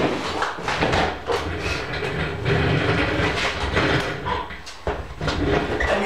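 A chair being moved into place and sat in: a run of knocks and scraping.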